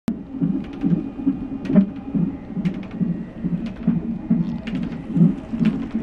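Fetal heartbeat played through a fetal monitor's Doppler ultrasound speaker: fast, regular whooshing pulses a little over two a second, the quick heart rate of a baby in the womb, with scattered brief clicks over it.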